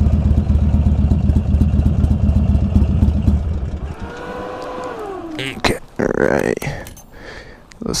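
2005 Buell XB9R Firebolt's V-twin idling, then shut off about three and a half seconds in. Afterwards a falling whine, then a few sharp clicks and knocks.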